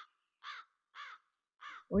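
A crow cawing four times, each call short and harsh, about half a second apart.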